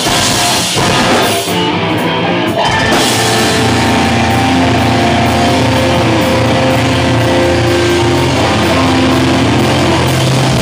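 Melodic hardcore band playing live, loud, with distorted electric guitars, bass and drums and no vocals. A run of hard drum hits in the first few seconds gives way to sustained, ringing guitar chords over a held bass.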